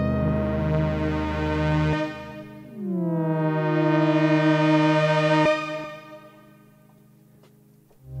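Waldorf Blofeld synthesizer pad: a held chord ends about two seconds in. A new chord follows whose notes slide down in pitch before settling, then fades away about six seconds in.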